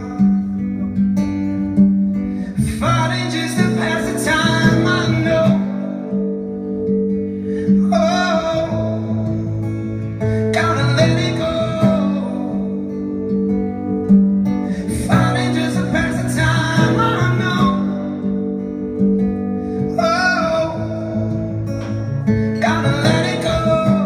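A man singing with his own acoustic guitar, live. The sung lines come in phrases of a few seconds, with the guitar carrying on between them.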